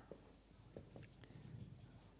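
Faint strokes of a marker pen writing on a whiteboard, a few short scratches spread across the moment.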